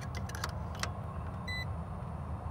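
Steady low hum of running rooftop HVAC equipment, with light clicks of meter test leads against breaker terminals and one short high beep about a second and a half in.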